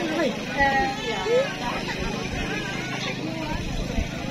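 People's voices: talking and chatter among a seated crowd, over a steady low hum.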